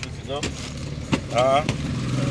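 A motor vehicle's engine running with a steady low hum that grows stronger about halfway through, under short vocal sounds and a couple of sharp clicks.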